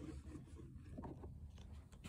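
Near silence: faint room tone with a low hum and a few soft ticks.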